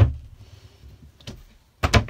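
A motorhome's small kitchen cupboard door is shut with a loud knock, followed by a short low rumble of handling. A faint click comes about a second in, and two more sharp knocks come near the end.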